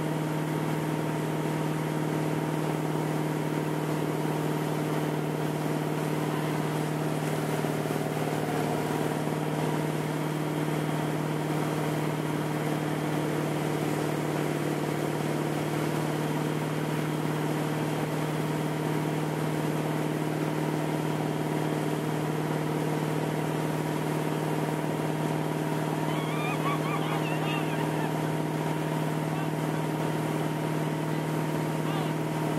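Towing motorboat's engine running steadily at a constant pitch, with a steady rush of wake water beneath it.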